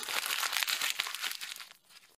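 Sound effect for a cardboard box of tablets spilling out: a dense crackling rattle of many small clicks that fades away near the end.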